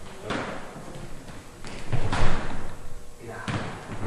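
Thuds of feet stepping and stamping on a hardwood floor during close-range martial arts sparring, several impacts with the loudest about two seconds in.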